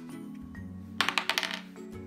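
A game die clattering across the table in a quick run of sharp clicks about a second in, over steady background music.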